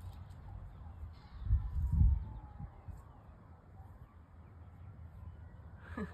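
Wind buffeting the microphone, with a strong gust about a second and a half in. A faint, distant wail slides slowly down in pitch and then back up behind it.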